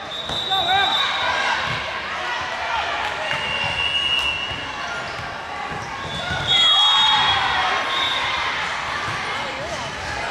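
Busy sports-hall ambience during volleyball play: sneakers squeaking on court floors, volleyballs bouncing, and voices echoing in the large hall. It gets louder about six and a half seconds in.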